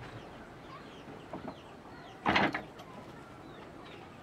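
Small birds chirping faintly and repeatedly in a rural yard, with one loud, short, rough burst of sound a little past halfway through.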